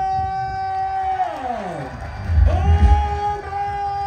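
A voice holding a long drawn-out note twice, each time ending in a falling glide, over music; loud low beats come in about halfway through.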